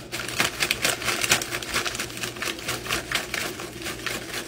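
Plastic snack-chip bag crinkling as it is handled close to the microphone: a quick, irregular crackle of many small clicks.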